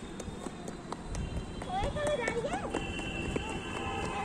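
Quick footsteps of a small child running on concrete paver blocks, with a short high child's voice calling out about two seconds in.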